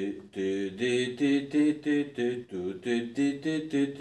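A man's voice singing a guitar riff on wordless syllables, a steady run of short notes about three a second that step up and down in pitch, counting out the six-note pattern in triplets.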